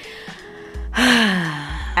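A woman's long, breathy sigh with a voiced pitch that falls as it goes, starting about a second in.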